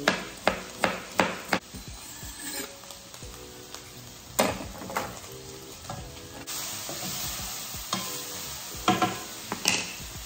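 Chef's knife chopping onion on a cutting board, five quick chops in the first second and a half. Then ground beef sizzling in a skillet as it is stirred with a wooden spoon, with a few knocks of the spoon against the pan and a steady sizzle growing louder in the second half.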